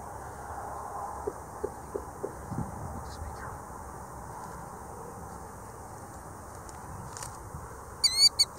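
Quiet open-field ambience with a few faint, short calls from a ground-nesting bird near its nest, and a handful of soft knocks in the first few seconds.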